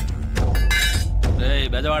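Glass shattering: a sharp crash about half a second in, over a low, sustained film score. A man's voice follows in the second half.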